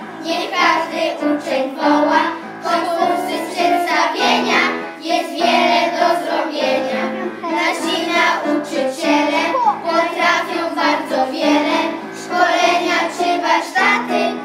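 A group of young children singing a song together in unison, continuously throughout.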